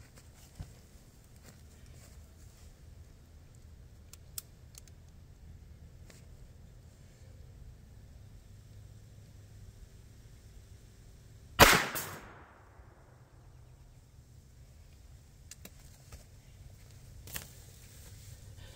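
A single .22 Long Rifle shot from a Taurus PT22 pocket pistol, firing a standard-velocity 40-grain round-nose load, about two-thirds of the way in: one sharp crack with a short ringing tail. A much fainter knock follows near the end.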